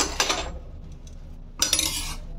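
A metal spoon scraping and clinking against a stainless steel kadhai as it gathers up a thick, doughy mixture: a clatter at the start, quieter scraping, then a louder scrape near the end.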